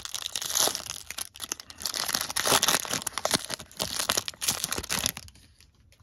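Trading card pack wrapper being torn open and crinkled by hand, a dense crackling that dies away about five seconds in.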